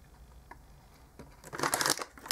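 Mostly quiet, with one faint click about half a second in. Near the end comes a short burst of crinkling from a plastic candy bag being handled.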